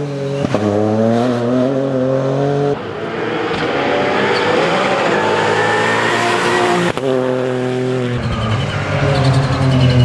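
Ford Fiesta rally car's engine revving hard under load as it passes, its pitch climbing and dropping between gears. The sound breaks off sharply twice, about three and seven seconds in.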